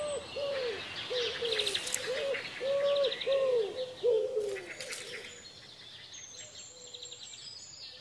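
Forest birdsong: a run of short, low hooting calls, about two a second, over higher chirps and trills, thinning out after about four and a half seconds to a faint high whistle.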